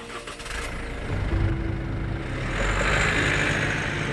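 Isuzu D-Max pickup's engine running with a low rumble that swells to a peak about three seconds in, over quieter background music.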